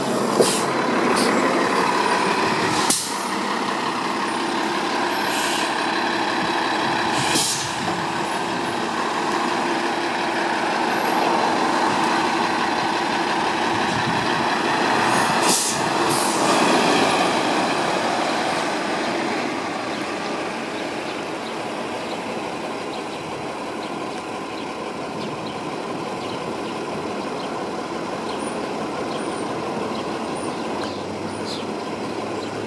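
2015 New Flyer XD40 Xcelsior diesel city buses running close by as they pull in and away from the stop, with several short, sharp air-brake hisses. The engine sound eases off about two-thirds of the way in.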